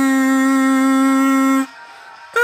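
Kazoo holding one long steady note that stops about one and a half seconds in.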